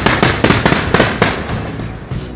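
Fireworks crackling and popping in a rapid series of sharp bangs that start suddenly and thin out after about a second and a half.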